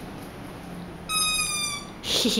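Child's Anpanman chair squeaking once as a toddler sits down on it: a steady high squeal lasting under a second, falling slightly in pitch.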